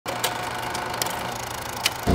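Film projector sound effect: a steady mechanical whir with crackle and a few sharp, irregular clicks.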